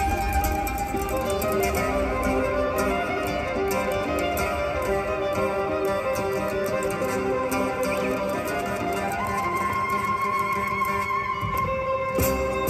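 Street buskers playing live: a violin carrying the melody over acoustic guitar accompaniment, with a long held high violin note near the end.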